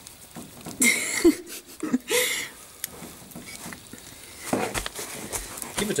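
Split pin being worked out of the castellated nut on a Land Rover steering ball joint: two short metallic scraping rasps about one and two seconds in, with small clicks of handling between.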